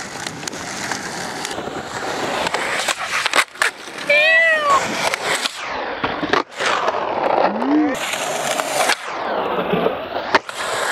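Skateboard wheels rolling over pavement with sharp clacks of the board, two of them loud, about a third and two-thirds of the way through. There are brief shouted voice calls between them.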